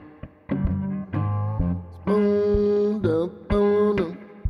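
Metal-bodied resonator guitar playing a fingerpicked blues riff: short plucked notes over a low bass, then a long held note from about two seconds in that dips in pitch near three seconds.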